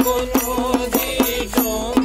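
A small rope-laced barrel drum struck with the fingers in a quick, even rhythm of about four strokes a second, under a chanted folk-song vocal.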